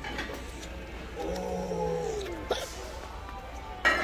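A person's voice drawing out a single long "I…" for about a second, its pitch sagging at the end, over a steady low hum. A sharp click comes right at the end.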